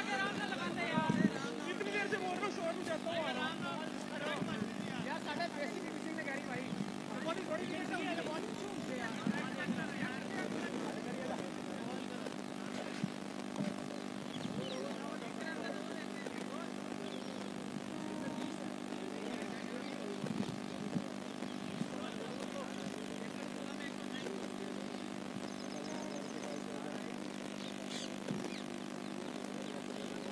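Indistinct voices calling and chatting across an open cricket ground, strongest in the first third, over a steady low hum that runs throughout.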